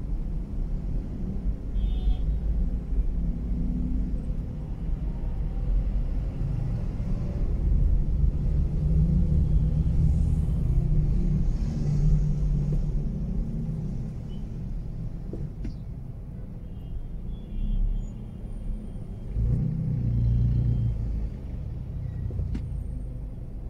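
Low engine and road rumble heard inside a Mazda3's cabin creeping through stop-and-go traffic. The rumble swells as the car pulls forward, around the middle and again near the end.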